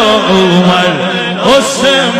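A man chanting a naat into a microphone: a drawn-out, ornamented vocal line that glides up and down in pitch, over a steady low drone.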